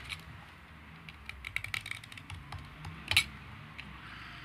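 Utility knife blade cutting and shaving the tip of a reed calligraphy pen: a run of small irregular clicks and scrapes, with one sharper snap about three seconds in.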